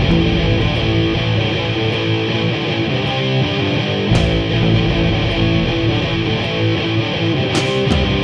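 Stoner rock band playing an instrumental passage led by electric guitar, with a deep low end filling in about four seconds in.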